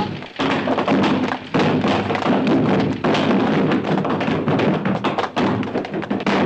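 Film score music over a rapid run of thumps and knocks: the sound effects of a comic scuffle, with blows landing.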